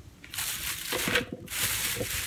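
Plastic packaging rustling as items are handled, in two spells: the first starts about a third of a second in, and the second follows a brief break at about one and a half seconds.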